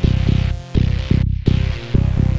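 Electronic music: a run of deep bass hits, each falling in pitch, over a held synth tone. The higher sounds drop out briefly just past the middle.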